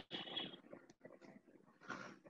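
A pause between a man's spoken phrases on a video call: faint scattered noise, close to silence, with a short faint sound just before he speaks again.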